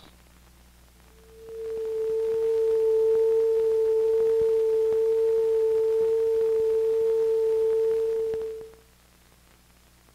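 Steady reference test tone on the film's soundtrack, a single pure note held for about seven seconds, given so the projectionist can set the projector's volume and tone. It fades in about a second in and stops well before the end, over a faint soundtrack hum with a few clicks.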